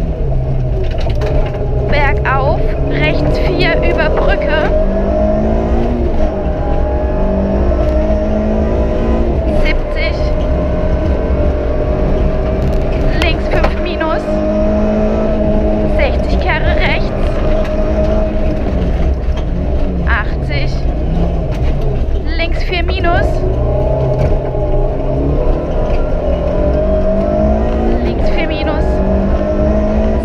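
Suzuki Swift Sport rally car's 1.6-litre four-cylinder engine at full stage pace, heard from inside the cabin: the engine note climbs as it revs out through the gears and drops each time the driver shifts or lifts for a corner, over and over.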